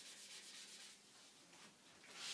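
Faint rubbing of a marker pen drawing on a whiteboard, fading about halfway through; otherwise near silence.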